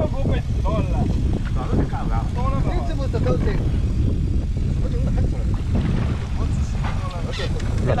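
People talking over a steady low rumble on a small motorboat at sea.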